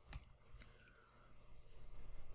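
Faint computer mouse clicks, one near the start and another about half a second later, otherwise near silence.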